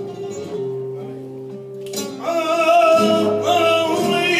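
Live flamenco por seguiriyas: flamenco guitar notes ring and sustain, then about two seconds in a sharp knock sounds and a singer's voice comes in with a long, wavering held line over the guitar.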